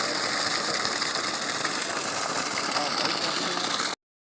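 Water gushing steadily from a discharge pipe into a pit, over the steady mechanical rattle of the machinery driving it.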